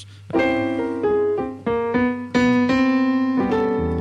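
Digital stage piano played with a piano sound: a series of sustained chords struck one after another, about one every half second.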